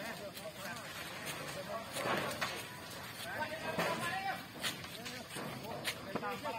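Indistinct voices of several people talking in the background, with a few sharp clicks.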